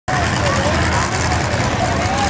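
Steady low rumble of several Bomber-class stock car engines running at low speed, with a person's voice, wavering in pitch, carrying over it.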